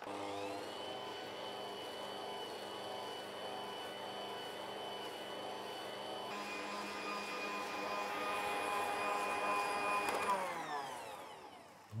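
Electric stand mixer beating soft butter and powdered sugar into a cream: the motor whines up to speed, runs steadily, shifts tone abruptly about six seconds in, then winds down to a stop near the end as it is switched off.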